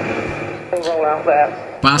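Recorded radio exchange played over loudspeakers: a stretch of hiss, then a short spoken phrase in the middle.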